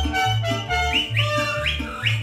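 Mariachi band playing an instrumental passage: sustained melody notes over a steady, alternating bass line, with a few quick rising notes high up in the second half.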